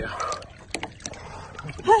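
Lake water sloshing, with scattered small splashes and knocks, and a burst of laughter near the end.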